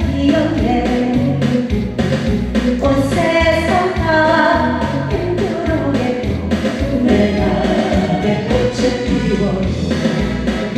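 A woman sings a Korean trot song into a microphone over a backing track with a steady beat.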